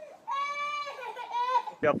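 A high-pitched human voice crying out in a long, wavering wail.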